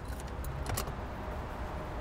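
A car key jingling and clicking into the ignition lock of a 1980 Mercedes-Benz W116 450 SEL 6.9: a few faint clicks over a low steady rumble.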